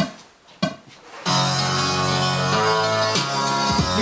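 Two short knocks, then about a second in a home-made hip-hop beat starts playing over studio monitors: a sampled record loop with a bass line doubling its main notes, and kick, snare and hi-hat samples cut from other songs.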